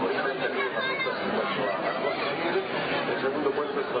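Continuous Spanish horse-race commentary by a man, calling the field as the horses run.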